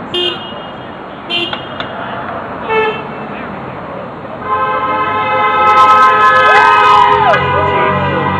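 Car horns honking in traffic: three short toots in the first three seconds, then a long, continuous honk from a little past halfway on. The honks are drivers answering 'Honk for jobs' protest signs.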